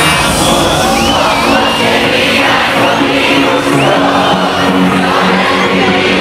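Live synth-pop music played loud over a stage sound system, with a large crowd cheering and whooping over it.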